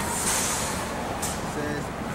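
City street traffic rumble and wind on the microphone, with a short hiss near the start and a faint voice near the end.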